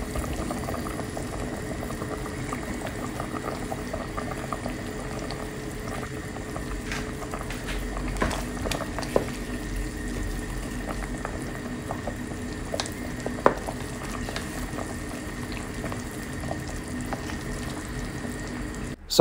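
A pot of sinigang broth with pork ribs and okra at a rolling boil, a steady bubbling. A few light clicks come midway as a wooden spoon stirs it.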